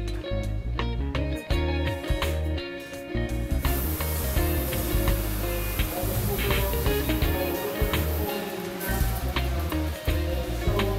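Background music with guitar, joined from about four seconds in by the steady hiss of water spraying down into an open filter basin.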